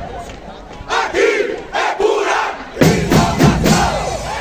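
A group of voices shouting together in short bursts during a break in a marching band's music, the last and longest shout about three seconds in with drum hits under it.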